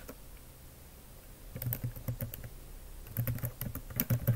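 Keystrokes on a computer keyboard, picked up by a laptop's built-in microphone: one click at the start, a quiet second or so, then two short runs of typing.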